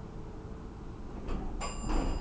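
Elevator arrival chime: a click, then a single bright ding about one and a half seconds in that rings on, over the low hum of a Dover hydraulic elevator car as it reaches the floor and its doors begin to slide open.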